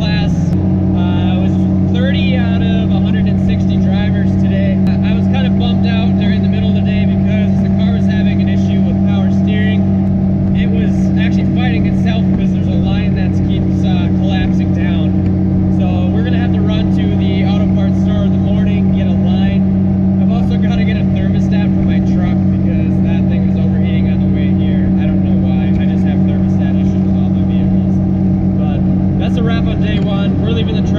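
Steady engine and road drone inside a Subaru Impreza GC8's cabin at a constant highway cruise, loud and unchanging in pitch, with a man talking over it.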